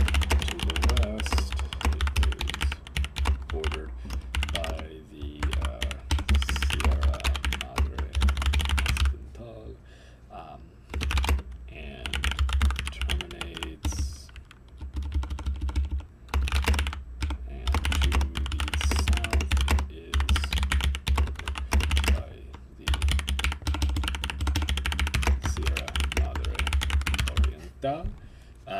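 Computer keyboard typing in fast runs of keystrokes, broken by short pauses of a second or two, with a dull thump under the key clicks.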